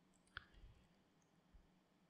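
Near silence with one faint computer-mouse click about a third of a second in, followed by a faint low thump or two.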